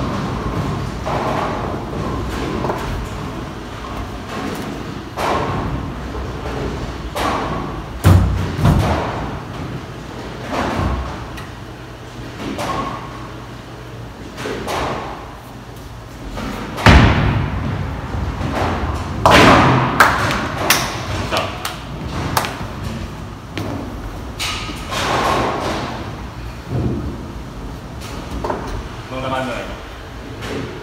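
Bowling alley sounds: bowling balls thudding onto the lane and pins clattering, with voices in the background. The loudest thuds come about 8 seconds and 17 seconds in.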